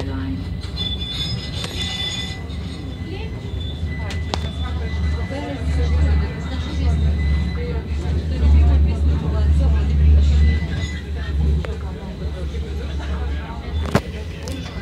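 Tram running on its rails, heard from inside the passenger car: a steady low rumble that grows louder about halfway through and eases again near the end, with a faint steady whine above it. Passengers' voices murmur over it.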